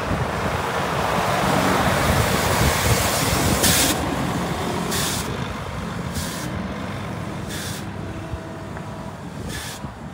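Volvo FH 6x2 truck's diesel engine running as it drives past and away, loudest about two to four seconds in and then fading. Several short hisses of air come from about four seconds on, typical of the truck's air brakes.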